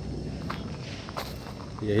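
A few faint footsteps on dirt and grass over a low, steady background hum.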